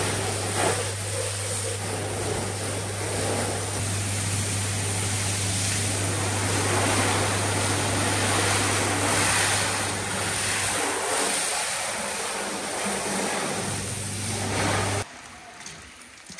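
High-pressure water spray hissing and splashing against a van's body panels during a rinse, with a steady low hum underneath. The sound cuts off abruptly about a second before the end.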